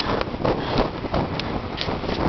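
Wind buffeting the microphone, with footsteps on concrete.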